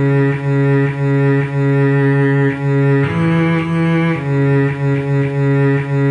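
Cello playing a melody line slowly, at half speed, in sustained low bowed notes that change every half second to a second.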